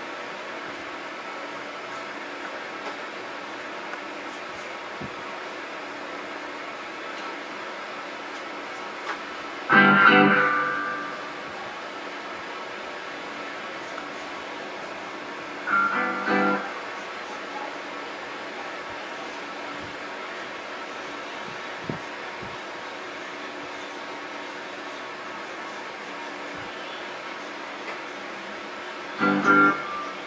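Electric guitar through Amplitube's amp simulation, sounding a few short chords over a steady hiss: one about a third of the way in that rings out for a second or so, a brief one around the middle, and another just before the end.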